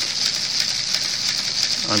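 Steady high hiss with no other sound.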